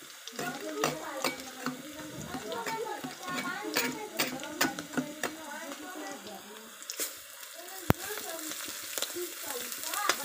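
A metal spoon stirring and clinking in a small steel bowl, mixing spice powders into a wet paste. Behind it is a steady sizzle of green chillies frying in hot oil in a kadhai. There is one sharper clink near the end.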